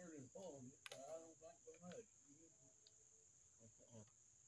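Faint, steady high-pitched chirring of crickets, under low mumbled speech in the first two seconds. A single sharp click sounds about a second in.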